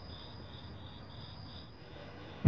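Crickets chirping faintly: one steady high trill, with a second insect chirping in regular pulses about three times a second.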